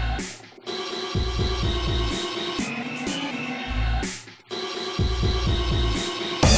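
Industrial electronic dance music: bass pulses under a held synth chord, with two brief drop-outs, about half a second in and about four seconds in.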